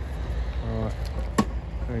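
A single sharp knock about one and a half seconds in, over a steady low rumble, with a short word of speech before it and speech again near the end.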